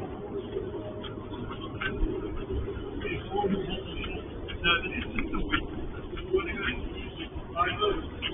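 Faint, indistinct voices of people talking as they walk away, heard through a security camera's narrow-band microphone, over a steady low hum and scattered short scuffs.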